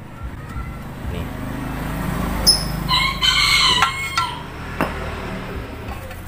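A rooster crowing once, a little over a second long, starting about three seconds in, over a low rumble that swells in the first half. A few light sharp clicks are heard around it.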